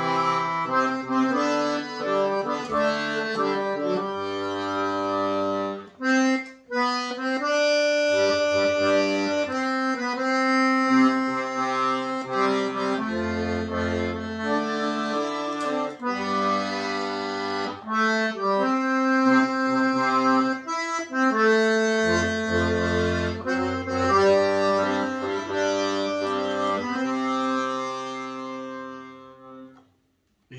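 A Universal 80-bass piano accordion plays a slow hymn verse: held right-hand chords carry the melody, with left-hand bass notes sounding in blocks beneath. There is a brief break about six seconds in, and the playing dies away near the end. It is played by a beginner, who says he made mistakes in every verse.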